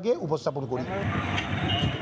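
A man's voice briefly, then from under a second in a steady hubbub of a crowd's mixed voices with vehicle noise.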